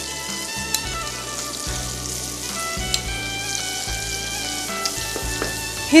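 Finely chopped onion and garlic frying in melted butter in a wok, a steady sizzle.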